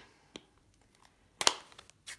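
Stamping supplies being handled on a work table: a faint tick, then one sharp click about a second and a half in, followed by a couple of small taps.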